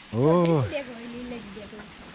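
A man's voice makes a short drawn-out wordless sound that rises and falls in pitch, then trails into a low held hum. A faint hiss of garden-hose spray sits underneath.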